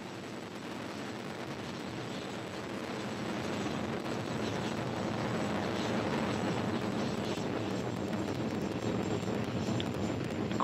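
Rocket engine noise from a Delta IV Heavy's three RS-68 engines during ascent, all three at full thrust: a steady rushing rumble that grows gradually louder.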